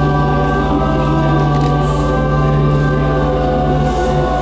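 Choir singing a hymn with organ accompaniment, on long held chords.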